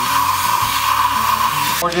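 Compressed-air blow gun on a shop air hose giving one steady, loud hiss as it blows debris out of the spark plug wells, cutting off near the end.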